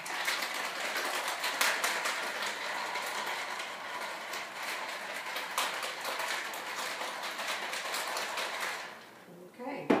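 Ice cubes rattling inside a lidded tumbler of iced matcha tea as it is shaken hard, a dense, fast clatter that stops about nine seconds in. A single knock follows near the end as the tumbler is set down.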